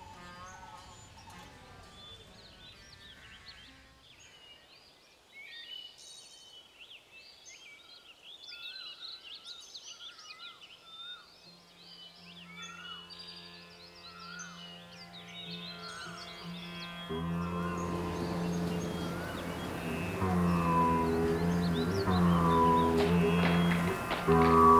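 Faint string music dies away in the first few seconds, leaving birds chirping and calling. Around the middle a low steady drone fades in, and Indian classical string music over the drone grows loud in the last several seconds.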